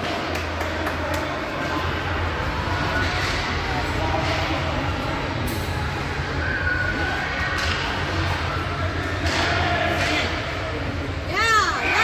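Indoor ice rink during a youth hockey game: scattered knocks of sticks and puck and indistinct distant voices over a steady low hum. Near the end, a burst of shouting breaks out from the players.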